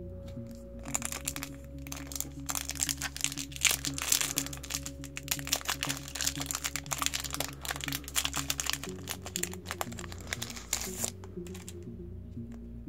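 Foil wrapper of a Yu-Gi-Oh! booster pack being torn open and crinkled by hand: a dense run of crackles that starts about a second in and stops about a second before the end, over background music.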